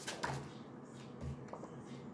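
Faint handling of a tarot deck in the hands as the shuffling winds down: a soft card flick just after the start, then a low bump and a light tap about a second and a half in.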